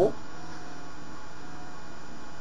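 A steady electrical hum with background hiss, holding one level throughout; the tail of a man's word is heard at the very start.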